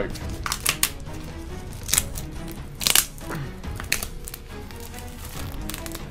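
Plastic shrink wrap being torn and crinkled off a box by hand, with several sharp crackles, over faint background music.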